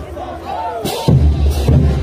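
Festival parade band music dropping to a lull filled by shouted cries, then the drums and cymbals come back in about a second in with a steady beat.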